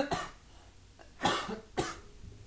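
A person coughing: one cough at the start, then two more about half a second apart in the second half.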